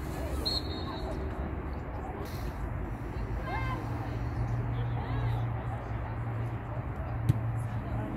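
Outdoor ambience of faint, indistinct voices over a steady low hum that grows stronger partway through, with a single sharp knock near the end.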